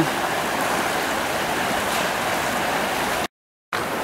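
Steady rushing of shallow river water running over stones, broken by a brief total dropout near the end.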